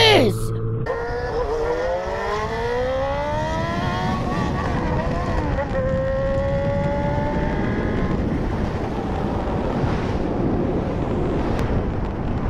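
Motorcycle engine accelerating, its pitch climbing through the gears with drops at shifts about four and six seconds in, then fading into steady wind and road noise.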